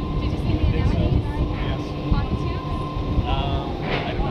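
Wind buffeting the microphone at sea: a steady, dense low rumble, with a thin steady whine under it that stops about three seconds in.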